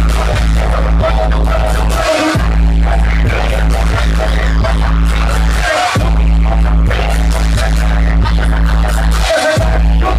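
Loud live concert music over a PA system, with a heavy, steady bass that cuts out briefly three times, about every three and a half seconds.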